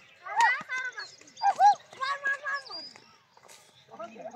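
Boys' voices shouting and calling out to each other during an outdoor game, with several loud, high calls in the first half and quieter calls near the end.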